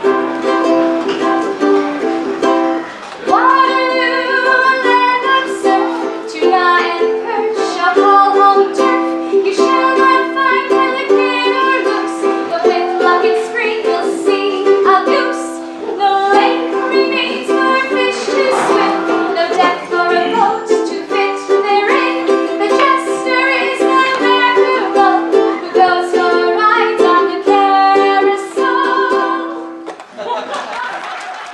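A woman singing a song, accompanied by a small guitar-like plucked string instrument strummed in a steady rhythm. The voice comes in about three seconds in over the instrument, and the song ends just at the close.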